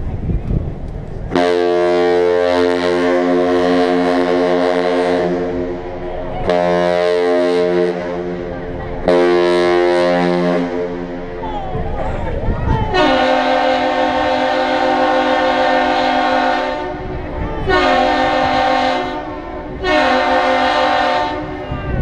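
Great Lakes freighter Paul R. Tregurtha sounding its deep horn in a salute: one long blast and two short ones. A second, higher-pitched horn then answers with the same long-short-short pattern.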